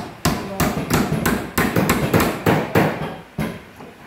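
Hand hammer striking repeatedly at a brass hinge on the edge of a wooden frame, fitting the hinge by hand: about a dozen sharp knocks, roughly three a second, stopping shortly before the end.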